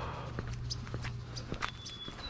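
Footsteps on a concrete sidewalk, picked up by a GoPro HERO8's built-in microphone: a series of short, sharp steps about three a second over a steady low hum.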